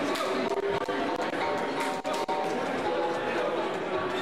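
Many voices talking at once: crowd and cornermen chatter around the cage, with no clear single speaker.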